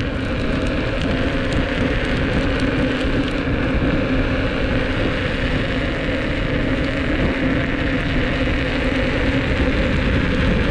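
Inmotion V10F electric unicycle rolling steadily on coarse asphalt: tyre noise and wind on the low-mounted microphone, with a steady hub-motor hum and a faint whine that drifts slightly up and down in pitch.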